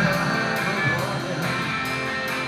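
Live rock band playing: a drum kit keeps a steady beat of cymbal strokes over electric bass and guitar.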